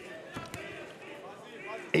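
A couple of short dull thuds in the first half second as two kickboxers grapple in a clinch, over a faint arena background with distant voices.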